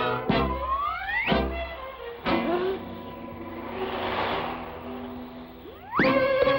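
Cartoon soundtrack: music with effects. Two low booms come about a second apart, with rising whistle-like glides, then a sharp crash a little after two seconds. A hissing swell follows in the middle, and a rising glide comes near the end.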